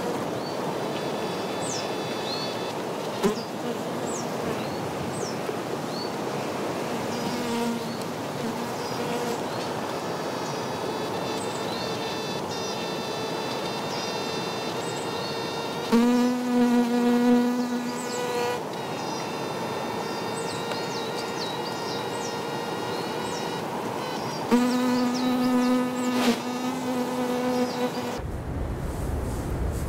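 A fly buzzing around close to the microphones, faint at first, then loud in two passes, one about halfway through and one near the end. Short bird chirps and a steady hiss run underneath.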